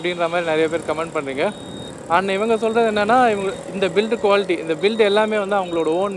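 Speech: a voice talking steadily, with a short pause about a second and a half in.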